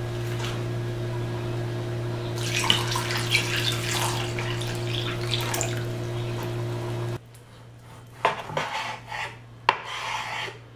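Water poured from a glass measuring cup into a bowl of cut potatoes, splashing for about four seconds over a steady low hum. After a sudden drop in level, a knife cuts raw meat on a wooden board with a few sharp knocks near the end.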